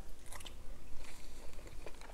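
A man chewing a mouthful of seared yellowfin tuna: faint, soft mouth sounds with small scattered clicks.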